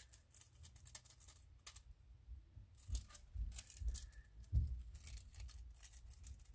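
Faint handling noise: scattered small clicks and rustles of small objects being handled near the microphone.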